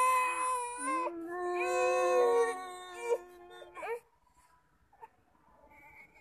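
Baby crying: two long wails, then a short one, after which it goes quiet about four seconds in.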